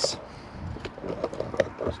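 Faint handling noise inside a wood-floored storage locker: light rubbing and knocking, with two sharper ticks, one a little under a second in and one about one and a half seconds in.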